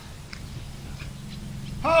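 Mostly quiet background with a faint steady low hum, then a man's drawn-out exclamation starts near the end.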